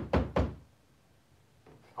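Stencil brush dabbed down onto a stencil on a wooden board: two quick knocks in the first half-second, then near silence.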